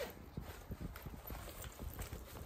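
Handling noise from a pink handbag being turned and opened: a run of irregular soft clicks and taps from its fabric and hardware.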